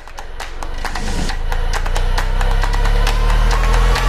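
An intro music build-up: a low rumble and a slowly rising tone swell steadily louder, with scattered crackles over them.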